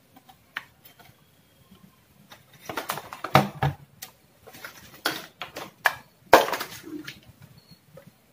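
Handling noise from a plastic laptop-style power adapter and its cables being moved and turned over on a wooden workbench: scattered knocks, rustles and clicks, with a sharp click a little after six seconds.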